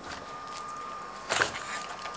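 Faint, steady high-pitched whine of building renovation work next door, over a low hiss. A short rustle about one and a half seconds in is the loudest moment.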